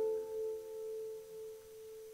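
Background music: a single held note rings steadily and slowly fades, with a faint higher tone above it.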